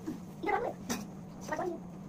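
Young children's short, high-pitched vocal sounds, three brief bursts without clear words, over a steady low hum.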